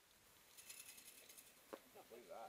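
Faint, rapid clicking of a mountain bike's rear freehub ratchet as the bike coasts, lasting about a second, followed shortly by a single sharp click.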